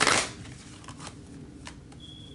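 Deck of tarot cards shuffled by hand: one short, loud riffle of cards at the start, followed by a few faint clicks of cards.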